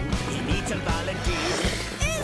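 Upbeat children's cartoon song music with a steady beat.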